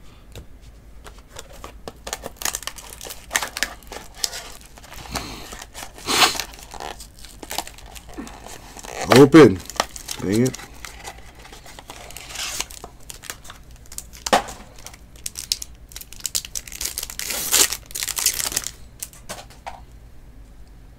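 Plastic wrapping on a pack of Bowman Sterling baseball cards being torn open and crinkled, with irregular crackling and rustling as the cards are handled. About nine seconds in, two short wordless voice sounds are the loudest moment.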